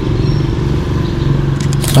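A motorcycle engine running steadily, with a few sharp clicks near the end.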